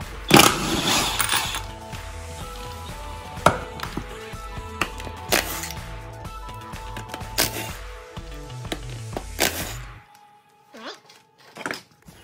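DeWalt cordless impact wrench with a 19 mm socket running in about five short bursts as it spins lug nuts off a golf cart wheel. The first burst is the longest and loudest. Background music with a steady beat plays under it and stops near the end, leaving a few soft knocks.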